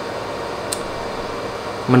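Steady, even hiss of background noise in a pause between words, with one faint short click about three-quarters of a second in.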